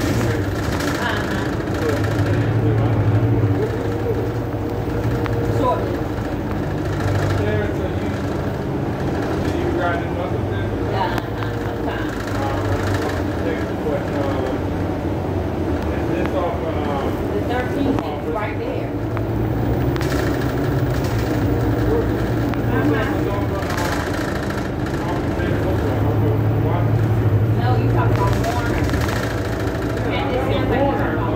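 City bus interior: the engine drones steadily, swelling and easing several times, under indistinct passenger voices.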